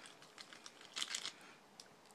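Faint crinkling and light clicks of a small plastic packet being picked open by hand.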